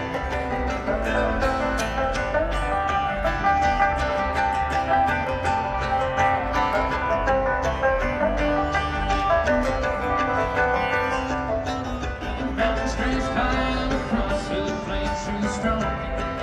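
Instrumental opening of a string-band tune: plucked strings quickly picking a melody over a steady bass line, without vocals.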